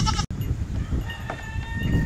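Wind rumbling on the microphone, with a faint, thin, high call in the second half.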